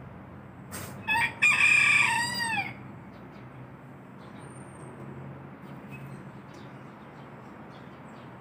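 A rooster crowing once, starting about a second in and lasting about a second and a half, the call dropping in pitch at its end. A short sharp click comes just before it.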